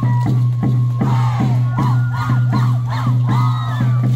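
Andean folk music for the contradanza dance, with a steady drum beat and a high melody line. About a second in, a run of short rising-and-falling voice calls, like shouts or whoops, sounds over the music for some three seconds.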